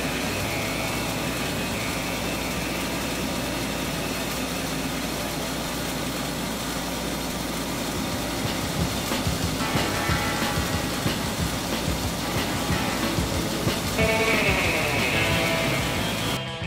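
Ore-processing vibrating screen running under a flow of wet manganese ore slurry: a steady machine rumble and wash, with rock chunks knocking irregularly on the deck from about halfway. Music comes in over it near the end.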